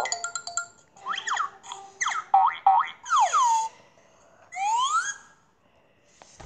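Cartoon sound effects from an animated children's story app: a short chime of notes, then a quick run of springy boings and sliding whistle glides, with a long falling glide about three seconds in and a rising one near five seconds.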